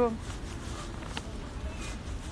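Low rumbling outdoor background noise picked up by a phone's microphone, with a faint click about a second in.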